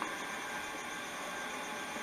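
Steady background hiss with faint, thin high tones running through it and no distinct sound event.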